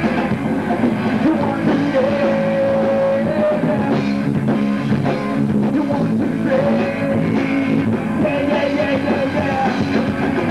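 Live punk rock band playing: electric guitars and drum kit, with a voice singing over them.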